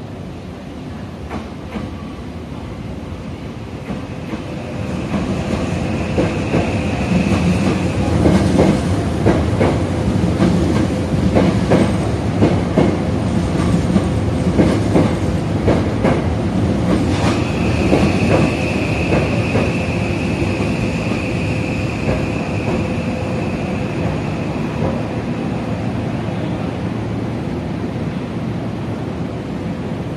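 A Hokushin Kyuko electric train running along the station platform. Its rumble builds over the first several seconds, its wheels clack rapidly over the rail joints through the middle, and a high steady whine comes twice.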